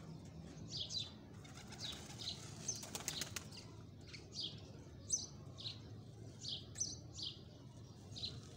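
A bird chirping over and over, short high chirps sliding downward, about two a second. There is a brief patch of crackling clicks about three seconds in.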